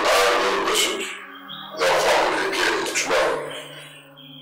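Two loud animal-like cries laid in as a dramatic sound effect, each about a second and a half long, over soft background music.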